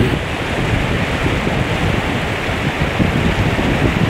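Shallow stream running over rocks, a steady rushing noise, with wind on the microphone.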